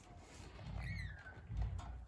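A bird gives one short whistled chirp that falls in pitch, about a second in, over a low rumble.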